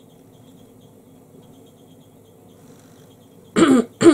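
A woman clearing her throat, a short loud burst near the end after a few seconds of quiet.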